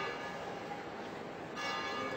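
A bell tolling slowly, its ringing tones hanging on, with a fresh stroke about one and a half seconds in.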